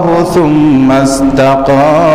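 A man chanting Arabic Quranic verse in melodic recitation, holding long notes that step up and down in pitch.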